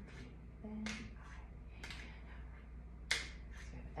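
A few sharp hand clicks and taps, spaced about a second apart, the loudest about three seconds in.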